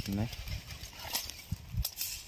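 Foil-laminated seed packets being handled and shuffled: faint rustling with two sharp crinkles, about a second in and near the end.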